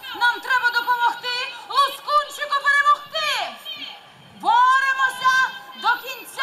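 A performer's high-pitched voice in a stage musical, with long held syllables and sliding drops in pitch. It comes in two phrases with a short pause a little before four seconds in.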